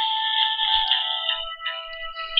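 Telephone hold music coming through the phone line while a call is being transferred, thin and narrow with no bass.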